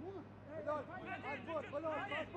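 Footballers' voices calling out on the pitch: several short overlapping shouts from about half a second in, over a steady low hum of ground noise.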